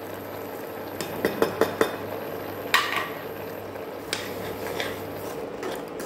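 A steel spoon stirs and scrapes through milk and grated radish in an aluminium pan, with several light clicks of the spoon against the pan, the sharpest about three seconds in. A faint steady low hum sits underneath.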